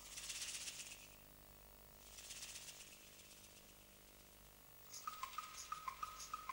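Two faint, short hissing swishes about two seconds apart, like a shaker in a stage soundtrack; about five seconds in, music starts with a quick repeating high note and ticks, about three a second.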